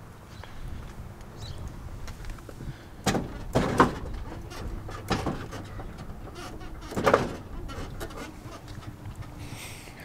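A lowrider's switch-controlled suspension being dropped at the front: about four short clunks and rushes of noise, a second or two apart, as the front end is let all the way down.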